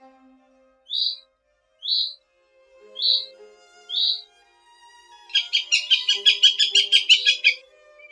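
Goshawk calls from the nest: four short, high calls about a second apart, then a rapid run of about a dozen harsher notes near the end. Soft violin music plays underneath.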